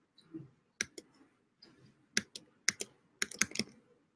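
Typing on a computer keyboard: scattered single key clicks, then a quick run of keystrokes near the end.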